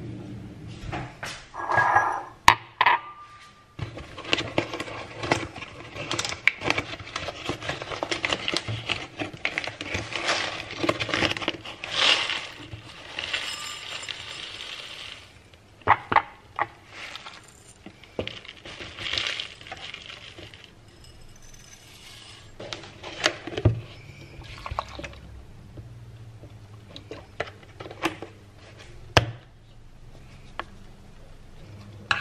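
Rolled oat flakes poured into a drinking glass with a long rustling pour, among clinks of glass and a ceramic bowl on a countertop. Several sharp knocks come later.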